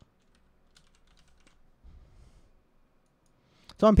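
Faint computer keyboard typing: a scattered run of light keystroke clicks as a line of code is edited, dying away after about a second and a half, then a soft low thump about two seconds in.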